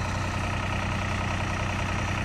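Fire truck's engine running at a steady idle: an even, low hum with no change in pace.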